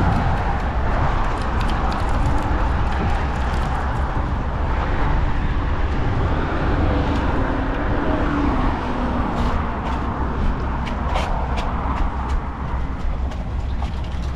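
Steady wind noise on the microphone with a deep outdoor rumble, and a few light clicks in the second half.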